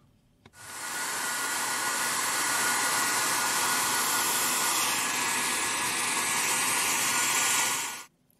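Handheld hair dryer switched on with a click about half a second in, blowing steadily, then cut off just before the end. It is warming the adhesive under a broken iPhone 11 camera glass to loosen it.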